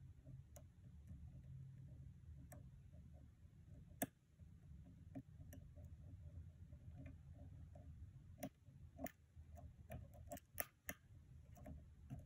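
Faint, sparse metallic clicks and ticks of a hook pick working the pins of a pin-tumbler lock cylinder held under tension, over a low steady hum. One sharper click comes about four seconds in, and a quicker run of clicks comes near the end.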